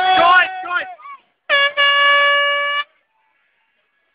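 A horn sounding at one steady pitch: a brief toot, then a blast of about a second. Before it, raised voices in the first half second.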